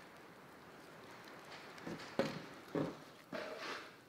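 A knife cutting and scraping against a skinned whitetail deer skull's bone and tissue as the small bones by the lower jaw are cut free: a few short knocks and wet scrapes in the second half.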